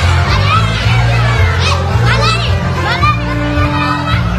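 Loud amplified dance music with a heavy bass line, under a crowd of excited voices: children's shouts and squeals swooping up and down in pitch.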